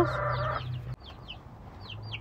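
Baby chicks peeping: a scatter of short, high, falling peeps, fainter than the talk around them. A brief held tone sounds in the first half second.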